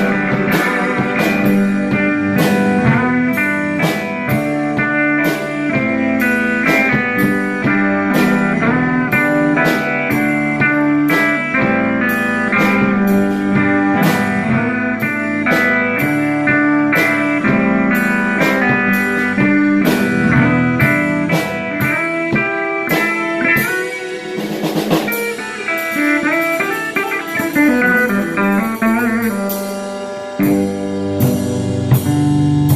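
A live rock band playing: electric guitar, bass and drum kit, with the drums keeping a steady beat of about two strokes a second. A cymbal crash washes over the music about three-quarters of the way through.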